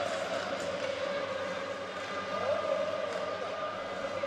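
Ice hockey arena crowd chanting steadily, with a few sharp stick clacks from the faceoff and play on the ice.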